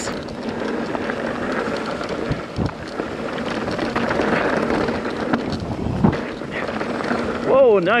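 Mountain bike rolling fast down a dirt and gravel downhill trail: a steady rush of tyre and wind noise, with a couple of sharp knocks as the bike hits bumps.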